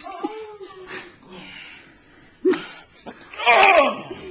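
A man laughing hard in breathless, wheezing bursts, the loudest burst near the end.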